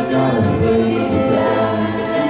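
Live acoustic folk ensemble music: several voices singing together in long held notes over acoustic string accompaniment.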